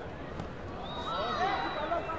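Shouted voices echoing in a sports hall, with a high steady tone sounding for about a second, starting about a second in, over the voices.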